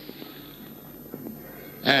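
A pause in a man's recorded speech, with only the faint steady hiss of an old lecture recording. His voice resumes near the end.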